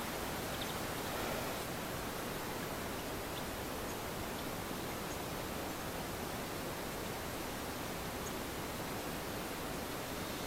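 Steady outdoor background hiss: an even, featureless noise with no distinct events.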